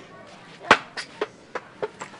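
A ball being knocked about: one loud thump, then four lighter knocks about a third of a second apart.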